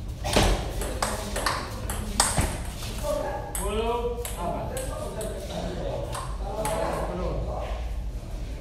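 Table tennis ball clicking off the table and rubber paddles in a quick rally, about two hits a second for the first two and a half seconds. Voices talking then take over as play stops.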